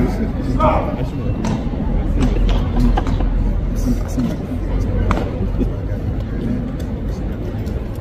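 Indistinct voices of people talking nearby over a steady low rumble, with a few scattered light clicks.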